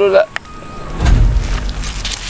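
A voice breaks off just after the start, followed by a click. About halfway in, a loud low rumble begins.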